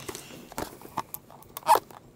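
Hard clear plastic packaging being handled, giving a few light clicks and knocks, then one louder short sharp sound near the end as the plastic-cased camera is worked loose from its box insert.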